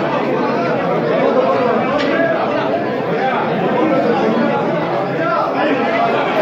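Many men talking at once: an overlapping, unbroken chatter of conversation in a room.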